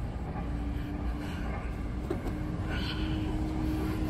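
Motor-vehicle engine noise over a steady low traffic rumble, with one engine note held steady and then dropping in pitch near the end.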